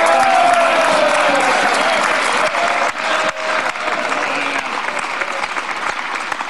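Members of Parliament applauding, with a few voices calling out over the clapping in the first seconds. The applause is loudest at the start and eases off slightly.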